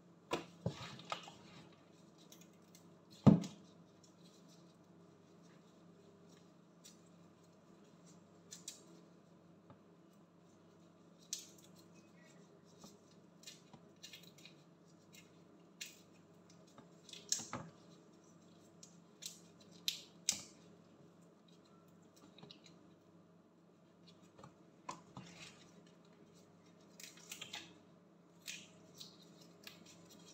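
Scattered small crackles and clicks of raw shrimp shells being peeled off by gloved hands over a plastic basin, with one sharp knock about three seconds in. A steady low hum runs underneath.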